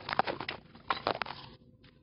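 Scuffing footsteps and handling noise on a concrete floor: a quick run of crackly clicks and scrapes in the first half-second, and another cluster about a second in.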